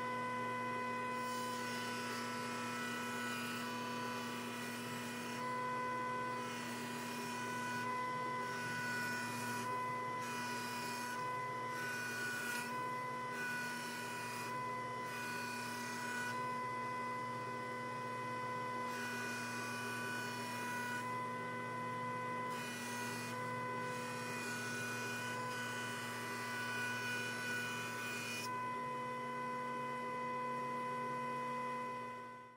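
Ridgid 6-inch benchtop jointer running, a steady hum with a high whine above it, while a clamped ash board is fed along the bed to joint its edge square to the face.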